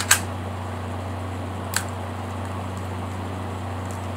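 Lego brick pistol slide snapping forward under its internal rubber band: a sharp plastic click right at the start, and a second, lighter click a little under two seconds in. A steady low hum runs underneath.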